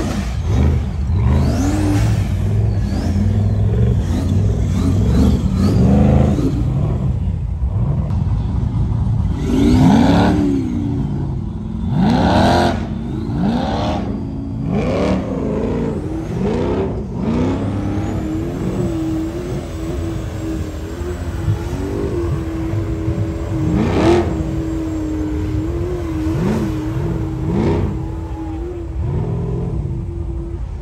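Rock bouncer buggy's engine revving hard in repeated rising and falling bursts as it claws up a steep rock-and-dirt hill climb. In the second half the revs hold at a fairly steady high pitch for about ten seconds.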